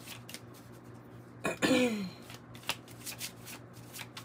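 A tarot deck being shuffled by hand: a run of quick, soft card flicks and slaps. About a second and a half in, a short vocal sound falling in pitch is the loudest moment.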